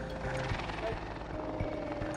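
Helicopter rotor beating steadily under a noisy wash, with background music.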